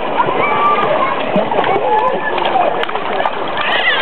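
A toddler splashing water in a swimming pool, over the steady chatter of many overlapping voices.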